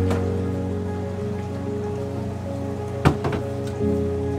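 Background music with sustained notes over a steady rain-like hiss. About three seconds in comes a sharp knock followed by a couple of lighter clicks: a glass bowl being set down on a refrigerator shelf.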